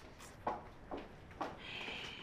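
Three soft rustles and taps, about half a second apart, as a ribbon-tied gift folder is untied and opened.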